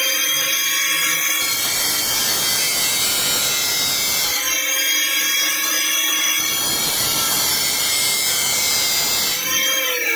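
Angle grinder with a thin cut-off disc cutting stainless steel pipe: a steady high whine over a harsh hiss. The disc bites into the pipe twice, with the motor running free between cuts. Near the end the whine starts to fall as the grinder winds down.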